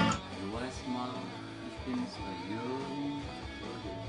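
Loud full-band music cuts off at the start, leaving a guitar played quietly: single held notes, some bent or slid up and down in pitch.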